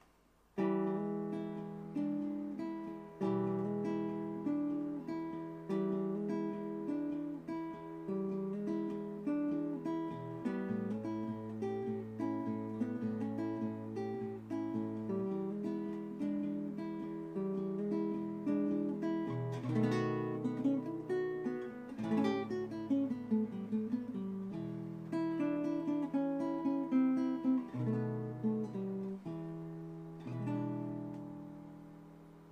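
Nylon-string acoustic guitar playing a 12-bar blues in E fingerstyle: hammered-on notes over a thumbed open bass string, moving through E, A and B7 chords, with a couple of strummed chords about twenty seconds in.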